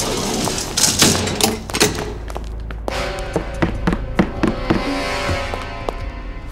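Film background score with a series of sharp knocks and thuds over it, the knocks thickest in the first two seconds.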